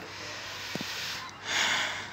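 A short sniff or breath close to the microphone, about a second and a half in, over a steady background hiss.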